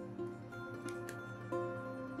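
Quiet background music: a slow melody of held notes, a new note about every two-thirds of a second, over a steady low tone.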